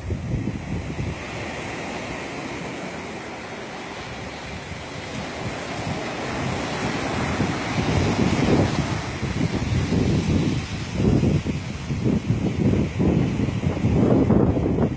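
Sea surf washing on a beach, with wind buffeting the microphone in irregular gusts that grow stronger in the second half.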